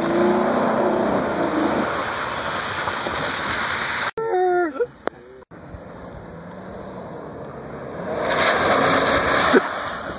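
Pickup truck engine running and accelerating on a dirt track, spliced from several short clips with abrupt cuts about four and five and a half seconds in. The engine grows loudest near the end as the truck comes toward and past.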